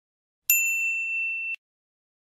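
A single bright bell ding, the notification-bell sound effect of a subscribe animation, ringing for about a second and then cut off abruptly.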